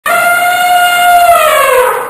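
A loud horn-like tone held at one pitch, then sliding down in pitch over its last half second as it fades out.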